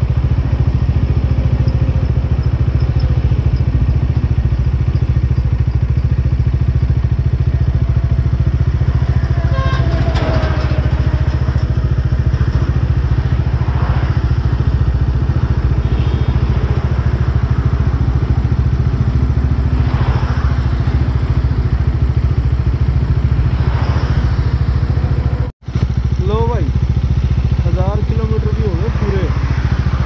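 Bajaj Dominar 400's single-cylinder engine running as the bike is ridden, under a loud, steady low rumble. The sound cuts out for a moment about 25 seconds in, then the rumble carries on.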